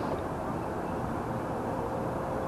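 Steady outdoor background noise, a low even rumble with no distinct knocks or clicks.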